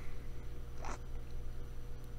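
Quiet room tone with a low steady hum, and one brief soft swish a little under a second in.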